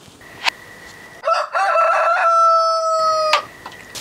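A rooster crows once, starting about a second in: a broken, choppy opening, then a long held note that cuts off sharply.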